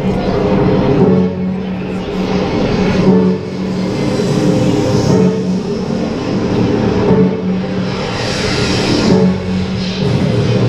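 Live band playing music, with long held notes.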